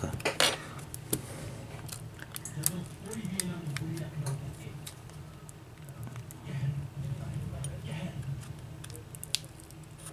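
Metal pry tool clicking and scraping against a smartphone's frame and battery while prying out a battery glued in firmly with double-sided tape. It makes a string of small sharp ticks, with a louder click just under half a second in.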